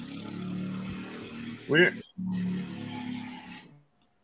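Motorbike engine passing outside, picked up by a host's microphone. It is a steady low drone with one short rising-and-falling rev just before two seconds in, cuts out briefly and dies away shortly before the end.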